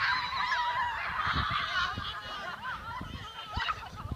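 A crowd of children shrieking and shouting together, a dense burst for the first two seconds that thins into scattered shouts.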